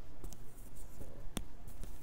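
Low rustling and handling noise over the steady background hum of a large store, with one sharp click about a second and a half in.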